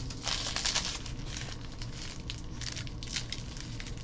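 The wrapper of a basketball trading-card pack crinkling as it is torn open and handled. There is a stronger rustle about half a second in, then scattered short crackles.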